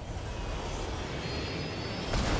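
Steady aircraft engine rumble from a movie trailer's sound effects, with a faint high whine gliding slowly downward.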